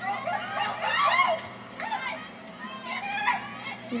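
Overlapping high-pitched shouts and calls from players and spectators at a women's soccer match, loudest about a second in, with no clear words.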